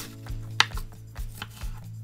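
A kitchen knife cutting lengthwise through a peeled, somewhat old daikon radish on a wooden cutting board, with one sharp click about half a second in. Soft background music with held tones runs underneath.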